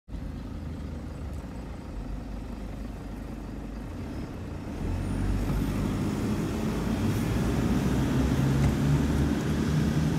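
Car engine and road noise heard from inside the moving car, a steady low rumble that grows louder about halfway through as the car gathers speed.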